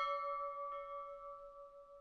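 A brass bell ringing out after a single strike, its clear tones slowly fading, with a faint second tap about two-thirds of a second in.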